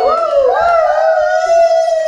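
A small dog howling: one long howl that wavers at first, then holds steady and falls off at the end.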